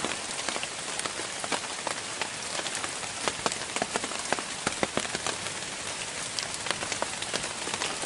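Rain falling on forest leaves: a steady patter with many separate drops ticking sharply on the foliage.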